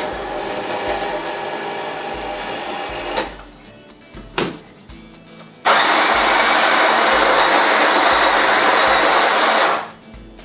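Graef electric burr coffee grinder running for about four seconds in the second half, while its grind is set coarser. Before it, a quieter steady motor hum for about three seconds, then a single knock.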